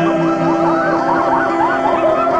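Wailing sound effects: many overlapping glides rising and falling in pitch, several a second, laid over the steady held notes of a song's backing.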